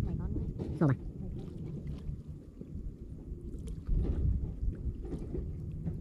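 Inflatable boat out on open water: an uneven low rumble of wind and water around the hull, swelling a little near the middle, with a short spoken word about a second in.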